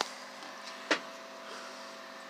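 A faint steady hum with one short, sharp click just under a second in.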